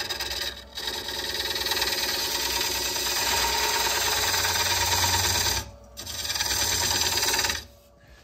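Hand-held lathe tool scraping the outside of a spinning ambrosia maple bowl on a wood lathe. It is a steady, loud scraping in two passes, with a brief break just before the six-second mark, and it stops near the end.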